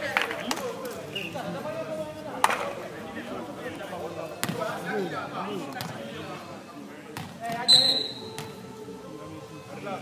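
Volleyball rally on a hard outdoor court: a few sharp slaps of the ball being hit, with players' and onlookers' voices calling out. About three-quarters through, a short shrill referee's whistle blast, the loudest sound, ends the point.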